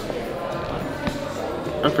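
Indistinct room noise of a restaurant lobby, with one soft low knock about a second in.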